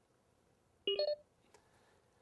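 A short electronic beep sequence, a few quick steady tones in a row lasting about a third of a second, about a second in; otherwise near silence.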